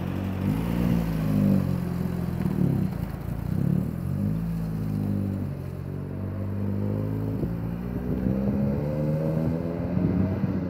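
Vintage car engine revving, its pitch rising and falling repeatedly.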